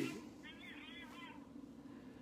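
Quiet room tone with a steady low hum. About half a second in comes a faint, brief, wavering pitched sound like a distant voice, lasting under a second.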